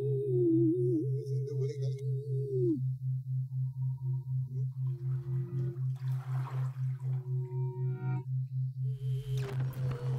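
Ambient electronic soundtrack: a low tone pulsing about four times a second, under a wavering higher tone that bends up and down and fades out about three seconds in. Soft swells of hiss rise and fall later on.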